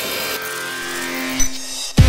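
Electronic sci-fi interface sound effects: steady synthetic hum and tones with a high hiss, shifting about half a second in, with a brief thump near the end.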